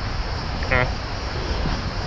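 Steady outdoor background rumble, strongest in the deep lows, with an even hiss above it. A man says a brief 'eh' a little under a second in.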